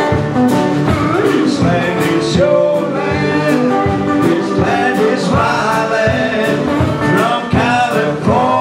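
Live acoustic folk-blues duo playing: acoustic guitar with a small drum kit keeping a steady beat of about two strikes a second, and a man's voice carrying a sung melody line.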